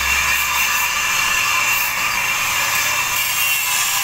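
A power tool running steadily with a high-pitched noise that never breaks; a low hum underneath dies away in the first half second.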